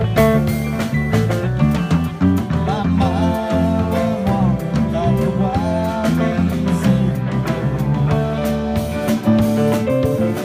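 A live rock band playing: guitars over bass and drums, with a sustained, bending lead line in the middle.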